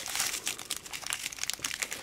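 Thin clear plastic bag crinkling and rustling as fingers work inside it to pick out a steel ball bearing, a dense run of fine crackles.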